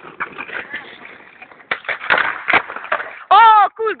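Skateboard heelflip on tiled paving: a few sharp clacks from the tail pop and the board landing, about halfway through, with wheel noise around them. Near the end a loud shout from an onlooker.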